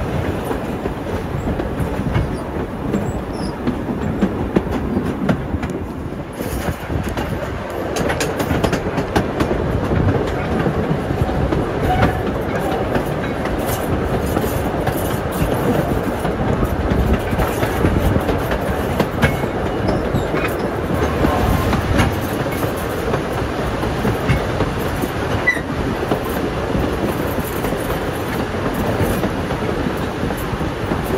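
Steam-hauled heritage passenger train's carriages running on the rails, heard from a carriage window: a steady rumble of wheels on track, with a run of sharp rail clicks.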